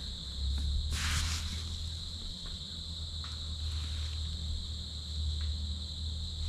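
Woodland ambience: a steady high-pitched insect-like drone over a low rumble, with a brief rustle about a second in.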